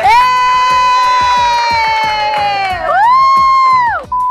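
Loud edited transition sound effect: one long high held note that sags slightly over nearly three seconds, then a second note that rises, holds for about a second and drops away.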